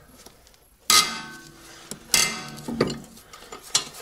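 Steel ring spanner and a long steel bar clinking against a seized front-suspension bolt: two sharp, ringing metal clanks about one and two seconds in, then a few lighter clicks.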